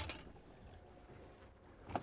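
Near silence: faint low background noise of an open boat at sea, with a short click right at the start.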